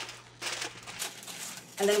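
Aluminium foil crinkling as it is pressed and crimped around the rim of a small baking dish, an irregular rustle.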